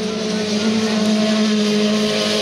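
Several autocross cars' engines running hard on a dirt track, a steady high-revving drone with a slight swell about half a second in.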